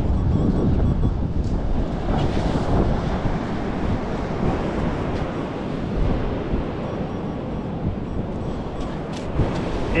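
Strong wind buffeting the microphone: a steady, low rumbling noise.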